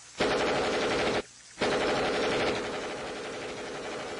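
Automatic weapon fire in two long bursts, broken by a short pause about a second in; the second burst eases into quieter, continuing firing.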